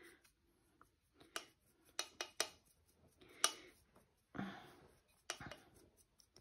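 A small brush scraping and tapping inside the clear plastic cup of a coffee grinder used for spices, sweeping out the ground spice. The sound is faint: a few sharp ticks and one short scrubbing stroke about two thirds of the way through.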